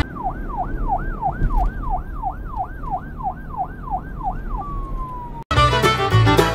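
Emergency vehicle siren in a fast yelp, about two and a half sweeps a second, over the low rumble of road noise inside a moving car. Near the end it slides into one slowly falling tone and cuts off suddenly.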